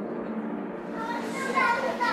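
Background voices of several people talking, growing plainer about halfway through.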